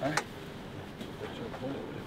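Outdoor ambience with a sharp click just after the start and faint low calls or murmurs.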